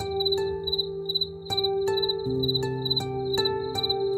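Slow ambient relaxation music of soft struck notes, about eight in this stretch, over held low pad tones. Crickets chirp steadily through it in a high, even pulse about three times a second.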